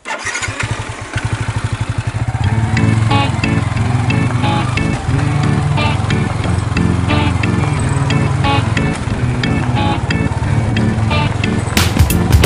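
Motorcycle engine starting with a sudden rise in sound, then running steadily as the bike rides along a rough dirt track.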